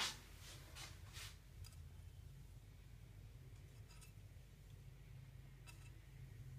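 Near silence: room tone with a faint low hum and a few faint clicks.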